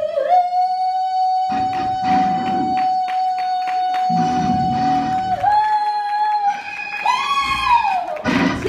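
A woman singing a gospel solo into a microphone, holding one long note that steps up in pitch about five seconds in and again near the end before falling away, over instrumental accompaniment whose chords come in and out.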